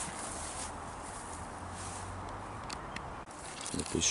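Outdoor garden ambience: a steady background hiss with a faint low hum, a couple of light ticks, and a few soft knocks and rustles near the end from the person walking with the camera.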